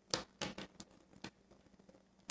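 Tarot cards handled on a cloth-covered table, with a few faint, scattered light taps and clicks as the cards are moved and set down.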